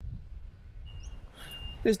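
Faint outdoor ambience: a low steady rumble with a few short high bird whistles and a chirp about a second in. A man's voice starts near the end.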